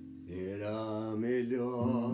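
An acoustic guitar chord rings, and a little after the start a man's voice comes in and holds one long, wavering sung note over it until near the end.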